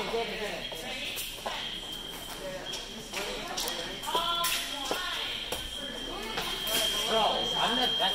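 Fencing footwork during a youth bout: quick steps and stamps on the piste, rubber soles squeaking on the floor and sharp clicks of contact, over voices in a large hall. A steady high-pitched electronic tone sounds through much of it.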